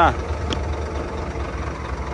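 A Scania truck cab door latch clicks open once, about half a second in, as the door handle is pulled. Underneath, a steady low engine idle hum.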